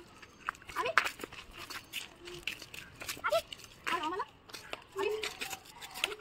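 Short, separate calls and babble from young children's voices, with scattered faint clicks between them.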